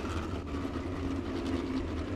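Several dirt-track midget race cars rolling slowly under a caution, their engines held at low revs in a steady, even note.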